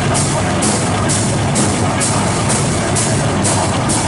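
Live metal band playing: electric guitar and bass guitar over a drum kit, with a cymbal struck about twice a second in a steady groove.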